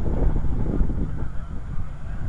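Wind buffeting the microphone: a gusty low rumble that rises and falls unevenly.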